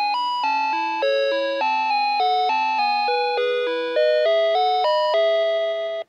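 Playskool Storytime Gloworm toy's speaker playing an electronic melody of bell-like notes, each note fading slightly before the next, about three notes a second; it cuts off sharply at the end.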